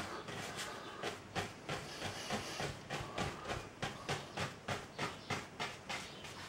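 A paintbrush stroking back and forth on a stretched oil-painting canvas in short, evenly spaced strokes, about three a second, working linseed oil into the wet surface.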